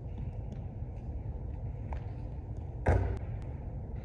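A basketball bouncing once on a hardwood gym floor about three seconds in, a sharp thud that echoes in the big hall, over a steady low room hum.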